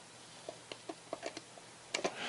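A run of about seven faint, irregular clicks from a slotted screwdriver turning out a small screw from a digital multimeter's plastic back case.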